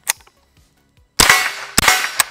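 Two shots from a Smith & Wesson M&P 15-22 semi-automatic .22 LR rifle, sharp cracks about half a second apart, the first about a second in, each trailing off in a short echo.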